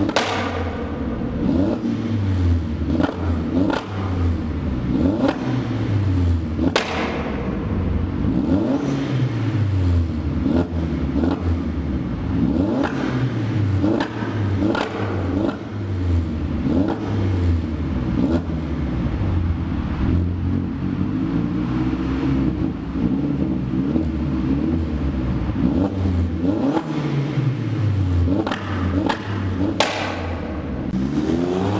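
Turbocharged 1.8-litre four-cylinder of a modified Skoda Octavia vRS Mk1, with a hybrid turbo and aftermarket exhaust, being revved repeatedly while stationary in a concrete underpass, the revs rising and falling every second or two. A sharp crack sounds near the start and again about seven seconds in.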